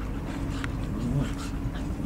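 Two English Cocker Spaniels play-wrestling, making low, wavering vocal noises that bend up and down in pitch, over light scuffling.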